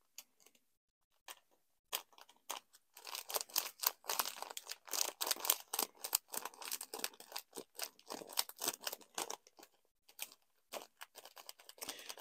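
Clear plastic bag of snowflake confetti crinkling and rustling in gloved hands as it is tipped and shaken over a cup of resin, sparse at first and thickest from about three to nine seconds in.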